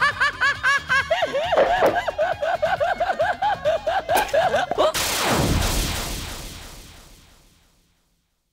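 A man's rapid staccato cackling laugh, about five 'ha's a second, high at first and dropping lower about a second in. About five seconds in it gives way to a loud sweeping burst that falls in pitch and fades away.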